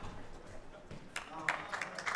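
Squash ball knocking sharply off the court walls a few times about a second in as the rally ends, then a crowd beginning to applaud near the end.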